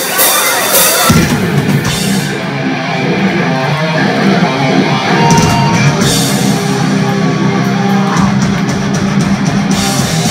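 Live heavy metal band playing, with distorted electric guitars, bass and a drum kit with cymbal crashes. The full low end of the band comes in about a second in.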